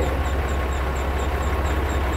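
Peterbilt semi-truck's diesel engine idling with a steady deep rumble.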